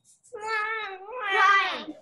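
A child's voice imitating a baby crying: two drawn-out, wavering wails, heard over a video call.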